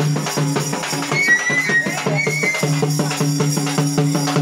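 Large frame drums (dappu) beaten by several players in a fast, dense rhythm over a steady low drone. A high wavering tone rises above the drumming for about a second, starting a little after one second in.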